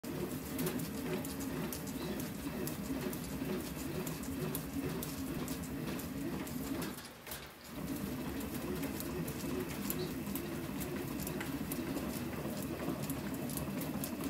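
Louisville Slugger LXT composite fastpitch bat being rolled by hand through a bat-rolling machine to break it in: a steady low rumble of the rollers on the barrel with frequent small clicks. It dies down briefly about seven seconds in, then resumes.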